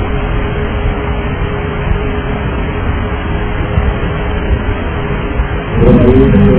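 Steady in-flight noise of a DC-9 on its cockpit voice recorder's area microphone: a dull rush of engine and airflow noise with a constant hum running through it. Near the end a louder sound with a wavering pitch starts.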